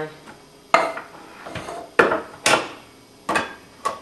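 Metal kitchenware knocking: a tin can clanking against a cooking pot as canned diced tomatoes are emptied into it, about six sharp clanks in four seconds.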